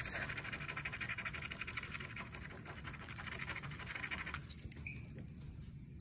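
A coin scratching the coating off a scratch-off lottery ticket: rapid, fine scraping strokes that stop about four and a half seconds in.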